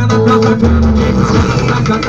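Loud Brazilian dance track with a heavy bass line, played through a paredão sound system: a trailer-mounted speaker wall of horn tweeters and four large woofers. A sung syllable comes right at the start.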